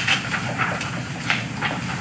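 Sheets of paper rustling as they are handled on a table: a few short, crisp rustles over a steady background hiss.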